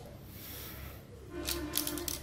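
Handling noise of a carbon fishing rod being picked up and turned in the hands: a soft rustle, then a few light clicks and taps in the second second.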